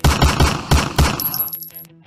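A loud, rapid burst of submachine-gun fire, about five sharp reports packed into a second and a half, that stops abruptly.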